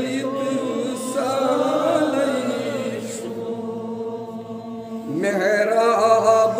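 Male voice singing a naat, a devotional song in praise of the Prophet, in a chant-like style with long, wavering held notes. The singing eases off around the middle, then a new phrase swells in with a rising glide near the end.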